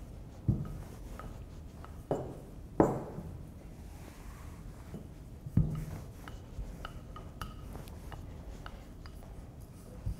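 Wooden rolling pin rolling pie dough on a floured stainless-steel table: a faint rub of the pin over the dough, with four sharp knocks in the first six seconds as the pin bumps the metal tabletop.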